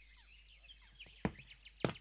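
Footsteps on a wooden floor, two sharp steps in the second half about half a second apart, over faint birdsong chirping.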